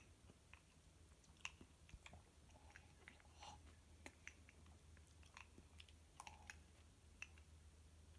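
Near silence with faint, irregular small clicks and crunches of someone chewing, over a low steady hum.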